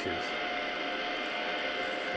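Steady background hum with two faint held tones and no clear events.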